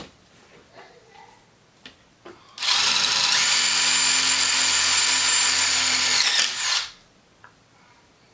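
Cordless drill driving a screw through a metal D-ring hanger into a wooden canvas stretcher bar. It starts a little over two seconds in, runs steadily at full speed for about four seconds, then winds down and stops.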